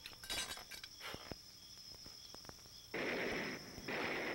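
A few sharp, distant-sounding cracks like gunshots in the first second and a half, then a short, louder burst of noise about three seconds in.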